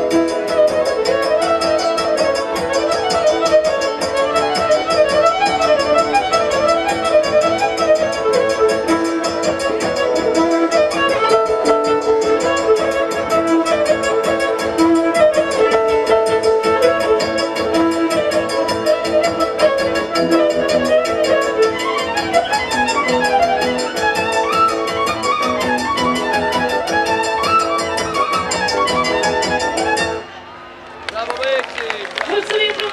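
Fiddle playing a fast, ornamented Romanian folk melody over a steady band accompaniment. The music stops abruptly at the very end.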